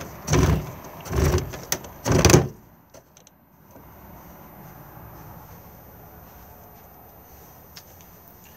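Winding handle of a caravan's Omni-Vent roof fan being turned to wind the roof vent shut: three short, noisy strokes of the winder mechanism in the first couple of seconds, then only a faint steady background.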